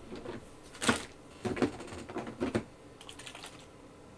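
Small hard objects being rummaged through: a few separate sharp knocks and clicks about a second in, again at about one and a half and two and a half seconds, then a faint quick run of ticks near the end.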